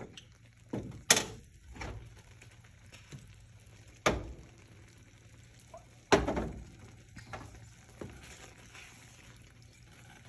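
Kitchen clatter: about five sharp knocks of a plastic spoon and a plastic measuring cup against a skillet and stovetop, the loudest about a second, four and six seconds in. Water is poured from the measuring cup into a pan of lentils.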